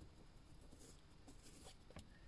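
Near silence: faint room tone with a couple of light rustles of curtain fabric being handled.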